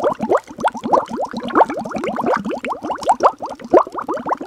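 Cartoon bubbling sound effect: a fast, steady stream of quick rising bloops, several a second.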